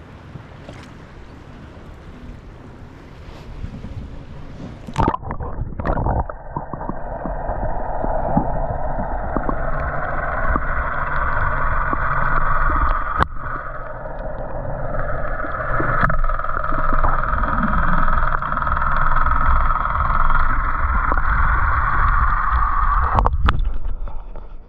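An action camera dipped into the sea: light wind and water noise above the surface, a splash about five seconds in, then a louder muffled underwater rumble and rushing with the high sounds cut off and a few sharp clicks, until it breaks the surface again near the end with another splash.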